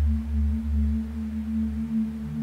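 Background meditation music: a sustained low drone with a steady held tone above it, swelling and fading gently.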